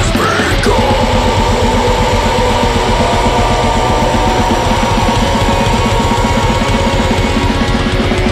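Live folk metal band playing at full volume: distorted guitars, bass and fast, even drumming, with a short rising vocal shout at the start, then a long held melody line over the beat.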